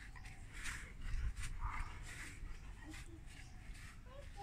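Golden retriever panting faintly, a few soft breaths.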